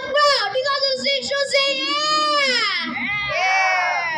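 A child's high voice singing long, drawn-out notes that slide down in pitch about halfway through and back up near the end.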